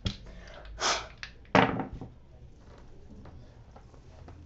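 A short blow of breath, then a handful of small rune dice cast onto a cloth-covered table, landing with a sharp clatter about a second and a half in, followed by a few faint ticks as they settle.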